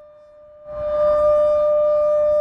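Memorial siren sounding one steady, unwavering tone, which swells up loud just under a second in.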